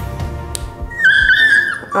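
A six-week-old Australian Labradoodle puppy giving one high-pitched whining cry, just under a second long, starting about a second in: his reaction to a microchip needle being pushed under the skin. Background music plays throughout.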